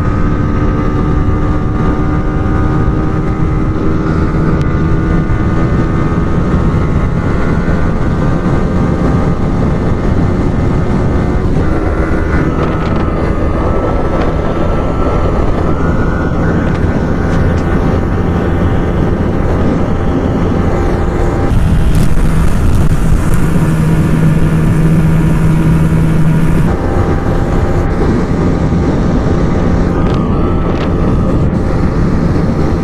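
Yamaha R15 V3's 155 cc single-cylinder engine running at high revs under full throttle, its note slowly climbing as the bike accelerates, with a change into sixth gear partway through, heard over heavy wind rush at close to top speed. The sound grows louder for a few seconds past the middle.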